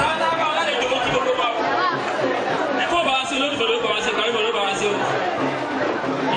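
Speech: a man talking steadily into a handheld microphone through a sound system, with other voices chattering behind.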